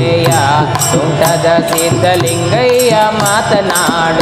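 Live Kannada devotional song (bhakti geete): tabla strokes in a steady, quick rhythm of about three a second, under held drone notes and a singing voice gliding through melodic runs.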